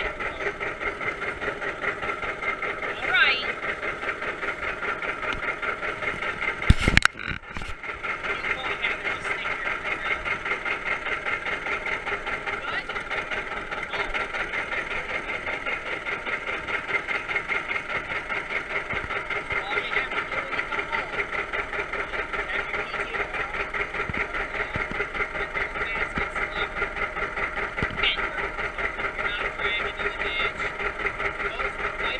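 John Deere tractor engine running steadily, heard from the driver's seat as a regular pulsing exhaust beat. There is a sharp clunk about seven seconds in.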